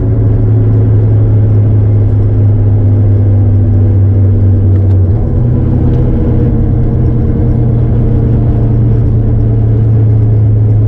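The Acura TSX's K24 four-cylinder engine and road noise heard from inside the cabin while driving, a steady low drone that steps up slightly in pitch about five seconds in.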